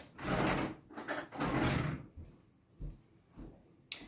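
A kitchen drawer sliding open and then shut as a fork is fetched, two scraping slides with a click between them, followed by a few light knocks.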